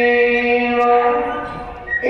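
An imam's chanted Quran recitation in Arabic: a man's voice holding one long drawn-out note that fades away shortly before a new note begins.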